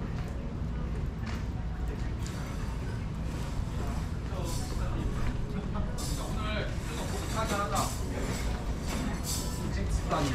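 Busy street-alley ambience: a steady low background rumble with passers-by talking nearby, their voices clearer in the second half.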